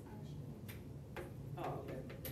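Classroom room tone: a low steady hum with a few sharp, irregular clicks or taps, and a brief faint voice near the end.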